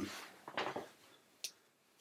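A pause in a man's speech, mostly quiet room tone. There is a faint short breath about half a second in and one small click near the middle.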